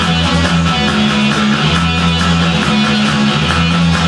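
Rock music led by guitar over a steady, held bass line, playing continuously without a break.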